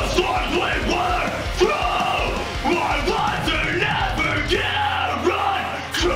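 Harsh screamed hardcore vocals over a loud, heavy band track with a steady low bass. It is a vocal take being recorded at the studio microphone.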